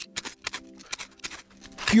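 Steel blade of a folding tactical shovel chopping into solid ice under snow: a quick, irregular run of sharp chipping strikes.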